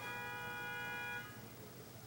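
A bell-like chime of several steady tones sounding together, held for about a second and a quarter and then stopping.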